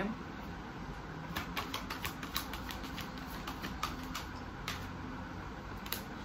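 Tarot cards being handled and drawn from a hand-held deck, then laid on the table: a quick run of light clicks and snaps from about a second in until near the end.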